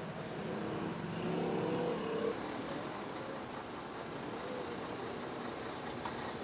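Street background noise with road traffic, steady throughout and swelling briefly about a second in as a vehicle passes.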